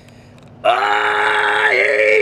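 A man's loud, drawn-out vocal cry, starting about half a second in and held steady on one pitch for about a second and a half before its pitch drops away at the end.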